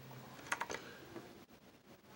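A few faint clicks and ticks of a plastic-and-card blister pack handled in the hand: a small cluster about half a second in and one more a little past the middle.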